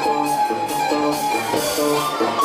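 Live rock band playing: distorted electric guitars repeat a short riff over drums and cymbals, with a last chanted "kicking" from the singer at the very start.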